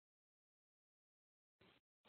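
Near silence: the audio feed is gated off between sentences.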